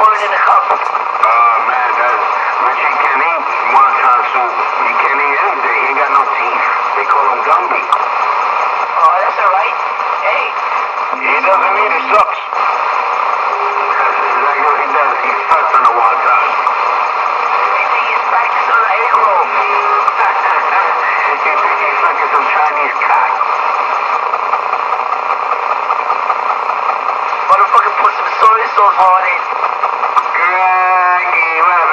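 Continuous talking heard through a small loudspeaker, as from a radio, thin-sounding with no bass.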